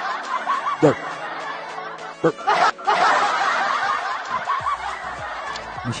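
Laughter from a group of people in two long stretches, broken briefly about two seconds in and fading out near the end.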